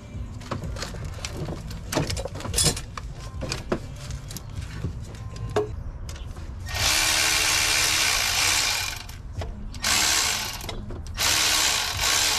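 Metal clinks and knocks as a turbocharger is handled and set onto its exhaust manifold. Then a cordless ratchet runs in three bursts, the first and longest about two and a half seconds, fastening the turbo.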